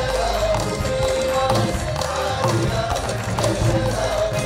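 Live band music: a group of backing singers sing a long-held melody together over steady percussion beats.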